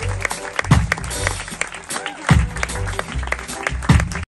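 Live jazz band playing instrumentally: bass notes under sharp drum-kit hits and cymbals.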